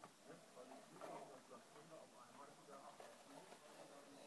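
Near silence, with faint rustling and handling of a full-head monkey mask being pulled on over the head.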